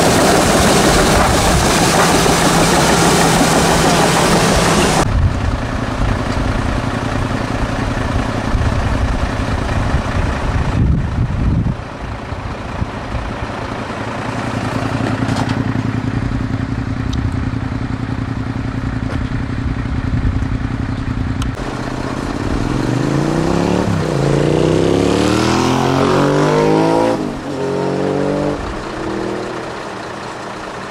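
Diesel engines running: at first a Hitachi tracked excavator working, loud and clattery, then an engine running steadily after an abrupt change about five seconds in. In the last several seconds a vehicle goes by with its engine pitch rising and falling.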